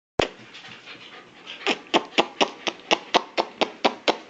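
A dog making a rapid, regular run of short, sharp vocal sounds, about four a second, starting about one and a half seconds in. One sharp sound comes at the very start.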